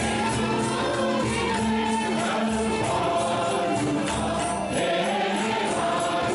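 A group of voices singing a devotional song together, with jingling percussion keeping a steady beat.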